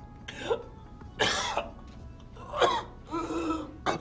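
A man coughing and laughing in four or five short outbursts with brief gaps between them.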